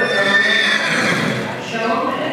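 A horse whinnying once: a high call of about a second at the start.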